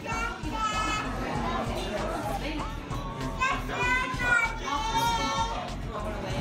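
Young children's voices, chattering and squealing, over background music.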